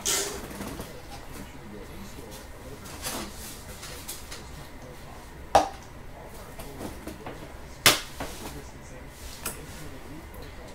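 Trading cards and hard plastic card holders being handled, giving a few separate clicks and taps of plastic, the sharpest about eight seconds in, over a low steady background.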